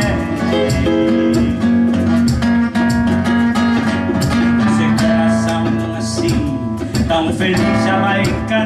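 Small live band playing: an electric guitar over a strummed acoustic guitar, with a cajon keeping the beat.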